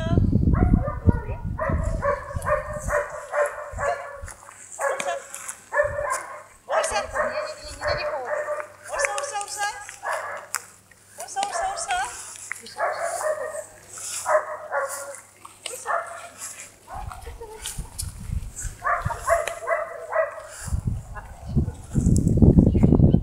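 A dog barking in quick repeated series, with short pauses between the runs of barks.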